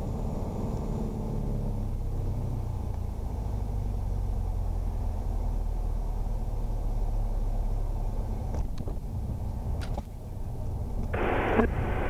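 Piper Arrow's four-cylinder Lycoming engine at idle, a low steady drone heard inside the cabin, as the plane rolls out on the runway after landing. About a second before the end, the radio opens with a burst of hiss and a controller's voice starts.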